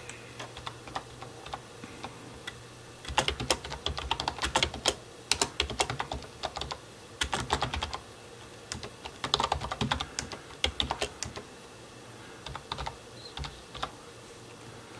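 Typing on a computer keyboard: a few scattered keystrokes, then quick runs of keys from about three seconds in until about eight, again from about nine to eleven, and a few more near the end.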